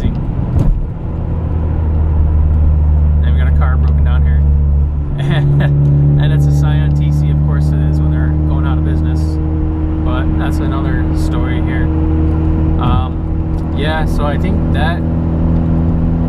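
Ford Focus ST's turbocharged four-cylinder engine droning steadily, heard from inside the moving car's cabin. About five seconds in the drone dips briefly and then carries on at a higher pitch.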